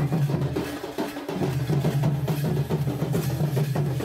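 Double-headed folk drums beaten in a steady dance rhythm, over a steady low pitched hum that drops away briefly about a second in.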